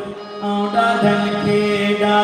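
Live South Asian folk music: a harmonium holds steady notes over a sustained low drone, with a singer and hand-drum accompaniment. The music dips briefly at the start and then comes back in.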